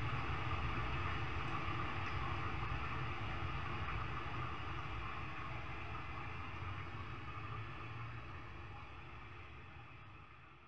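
A steady, noisy low rumble with a hiss above it, slowly fading away over the last few seconds.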